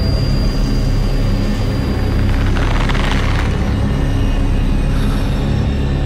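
Horror film soundtrack: a steady, deep, ominous rumbling drone, with a thin high tone held through the first half.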